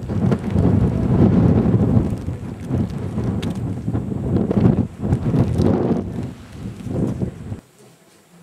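Strong wind buffeting the microphone: a loud, gusty low rumble that swells and eases, then stops abruptly near the end.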